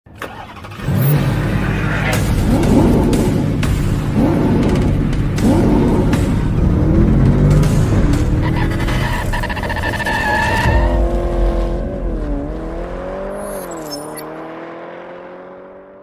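Sound effect of a car engine revving and accelerating, its pitch climbing again and again as it runs up through the gears, with music underneath. Later a steadier engine tone dips twice, then climbs slowly and fades out.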